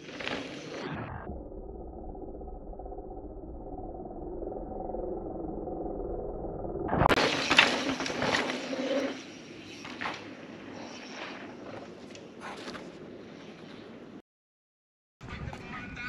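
Mountain bike tyres on a loose dirt trail: a muffled stretch, then about seven seconds in the full sound of the tyres sliding and throwing up dirt through a dusty turn, with crackles and knocks from the bike over the ground. The sound cuts out abruptly for about a second near the end.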